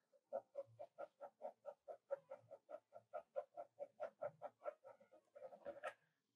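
Pencil hatching on drawing paper: faint, quick, even strokes, about five a second, laying in half-tone shading, with a quicker flurry of strokes near the end.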